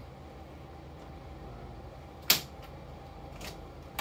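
One sharp snap about two seconds in, from hand work with a tool on the wire stitches along the plywood hull's edge, over a steady low hum.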